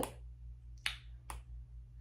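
Long acrylic fingernails tapping on a phone screen: two sharp clicks about half a second apart, over a faint low hum.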